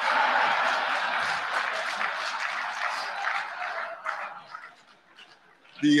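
Audience laughing at a joke: a loud burst of crowd laughter that dies away after about four to five seconds.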